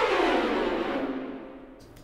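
Sampled orchestral strings playing a dense flurry of short spiccato notes. The notes fade away in reverb over the last second.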